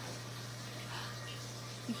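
Tower Garden vertical aeroponic planter running: a steady low hum from its pump under a faint, even hiss of water trickling down inside the tower.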